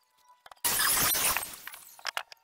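Handheld circular saw making a quick cut through a wooden board: a sudden loud burst of cutting lasting under a second, then fading as the blade spins down.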